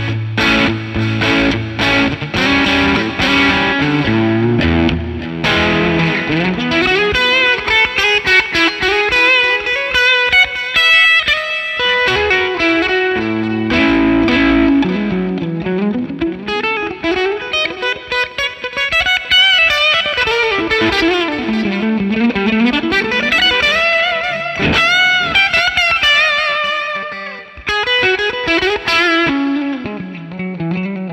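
Electric Stratocaster guitar played through a Benson Preamp pedal into a Fender '65 Twin Reverb amplifier, on a mellow, lightly overdriven drive tone. Strummed chords for the first few seconds, then a melodic lead line with string bends and vibrato.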